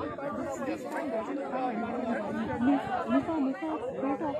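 Several people talking at once, their voices overlapping in a steady chatter.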